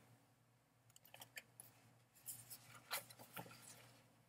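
Faint rustling and scraping of paper as a greeting card and its paper envelope are handled and slid against each other, in a few short soft strokes, most of them in the second half.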